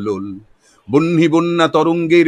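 A man's voice reciting Bengali poetry, drawing out long held vowels, with a short pause near the start.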